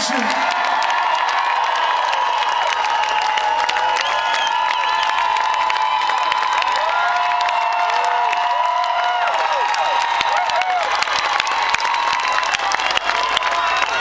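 A large concert crowd cheering and applauding, with many high-pitched screams and whoops held over the noise.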